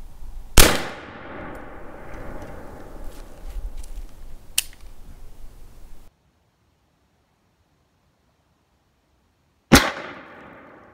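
1842 Springfield .69-calibre smoothbore musket firing: one loud shot about half a second in that rings and echoes away over about a second. Faint clicks follow, with one sharp click a little after four seconds in. The sound then cuts to silence, and a second musket shot goes off just before the end.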